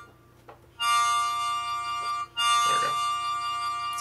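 Recorded harmonica sample played back from a Korg Volca Sample: after a short silence, a held harmonica chord sounds twice, each note about a second and a half long. The sample now rings out in full with the part's decay knob turned up, where a low decay had been cutting it short.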